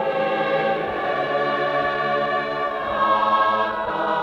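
Choir singing a Tongan hymn in slow, sustained chords.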